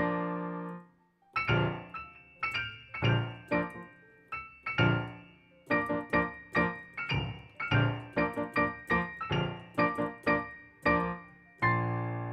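Solo piano playing a classical piece from the score: a held chord dies away in the first second, then a string of short, detached chords and notes with brief pauses between phrases, and another held chord shortly before the end.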